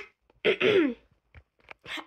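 A girl coughing and clearing her throat: a brief sharp cough, then a longer, louder throat-clearing cough about half a second in that falls in pitch.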